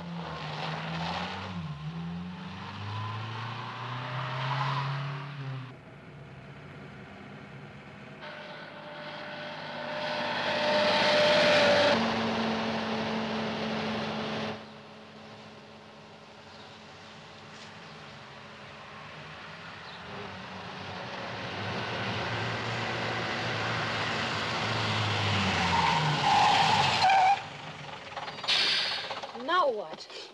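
Car engine running on the move, its pitch rising and falling as it revs, with abrupt jumps in level and tone. Near the end the engine note drops as the car slows.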